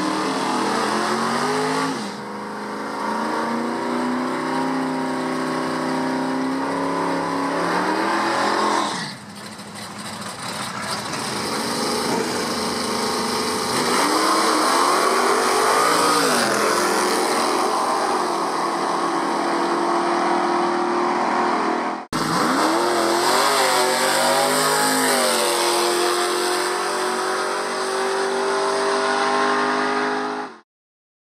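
Muscle-car engines at a drag strip: held at high revs through a tyre burnout, then revved up and down in repeated rises and falls while the cars stage and run. The sound breaks off suddenly for a moment about two-thirds through, then the revving picks up again.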